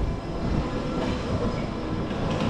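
Tram running along street rails with a steady low rumble and a faint whine.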